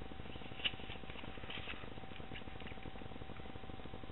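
Playing cards being handled: a sharp click about two-thirds of a second in, then a few light taps and rustles over the next two seconds, over a faint steady hum.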